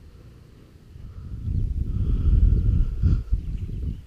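Wind buffeting the camera microphone: a low rumble that builds from about a second in.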